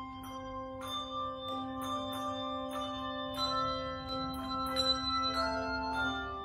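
Handbell choir ringing: several handbells struck together in chords every half-second or so, each chord ringing on into the next, over a low bell held through most of the passage.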